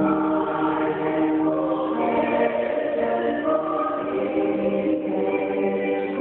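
Church choir singing held chords in several parts, the notes changing about every second.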